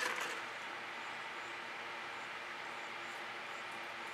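Steady, faint background hiss with a low hum and no distinct events.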